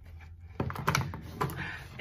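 A quick run of small clicks and knocks from handling makeup products and their packaging, starting about half a second in.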